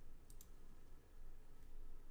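A few faint computer mouse clicks over quiet room tone: a quick pair about a quarter second in and a fainter single click later.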